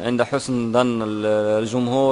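A man's voice speaking, with one vowel drawn out and held steady for about half a second near the middle.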